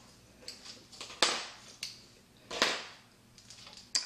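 Metal hair clips being handled and unclipped from locs: two louder clicks, each trailing off briefly, with a few fainter clicks around them.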